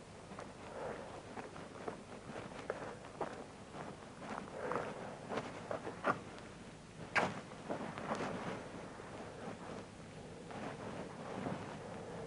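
Footsteps on an outdoor path at a walking pace, with clothing rustle. About seven seconds in comes a sharp knock, the loudest sound, followed by a few more irregular clicks and rustles.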